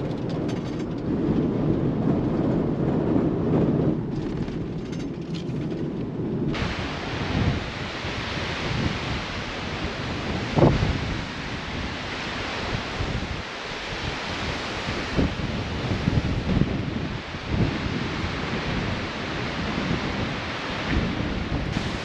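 Low road and engine rumble inside a pickup's cab for about the first six seconds, then an abrupt change to strong gusty wind buffeting the microphone in a loud, uneven roar, with one sharp gust thump about halfway through.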